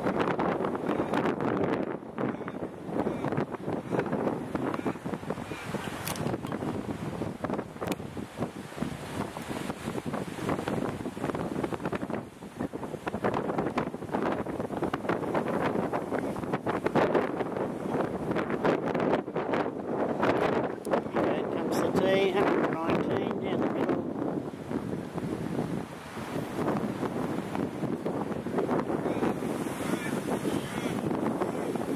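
Wind buffeting the microphone, a rough, noisy rush that swells and drops irregularly in gusts.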